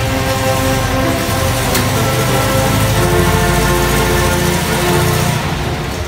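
The air-cooled flat-four engine of a 1951 VW Samba bus running with a rough low rumble, heard under music with held notes.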